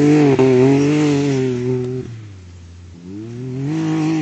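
Rally-raid car's engine pulling hard as it drives away up a dirt slope. It drops off suddenly about halfway through, then builds again with a rising pitch near the end.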